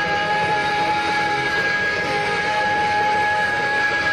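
Electric guitar feedback: one high note held steady through the amplifier, ringing with no new strums, over a low hum of amplifier noise.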